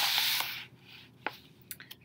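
A paper book page being turned: a brief swishing rustle lasting about half a second, followed by a light tap about a second later.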